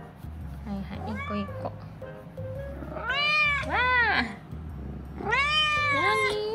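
Domestic cat meowing in a chatty run of calls, each rising and then falling in pitch. There is a quieter meow about a second in, two in quick succession around the middle, and a longer one near the end.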